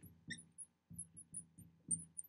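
Marker squeaking faintly on a glass lightboard while writing: a string of short, high chirps, several a second.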